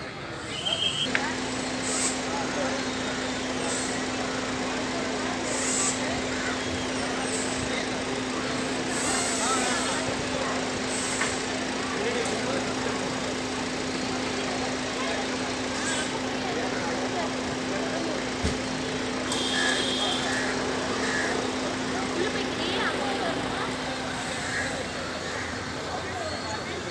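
Busy street ambience: people talking around a gateway mixed with passing traffic. A steady low hum sets in about a second in and runs until near the end, with a few short high-pitched sounds on top.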